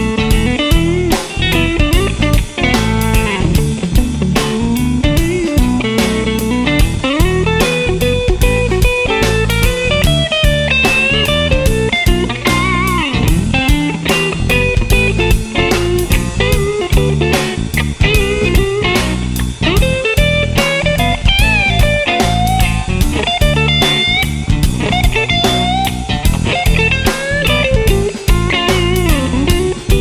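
Blues-rock instrumental: a Stratocaster electric guitar plays lead lines with bent notes over electric bass and a steady drum beat.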